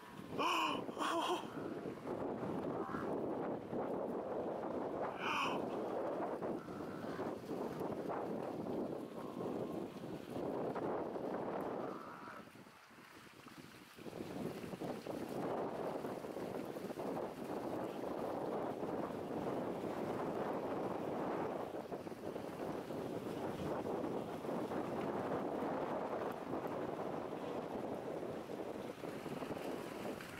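Thick, continuous rumble and clatter of a Cape buffalo herd stampeding across dry, dusty ground, with a short lull about halfway through. A few short, sharp animal calls cut through it in the first seconds.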